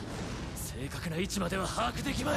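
Soundtrack of a subtitled action anime: a character's voice speaking Japanese dialogue, quieter than the nearby commentary, over a steady low rumble of battle sound effects.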